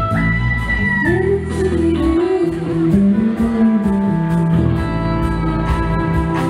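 Live pop-rock band playing an instrumental passage: electric guitar lines with gliding, bent notes over drums, bass and synthesizer keyboards, with a steady beat.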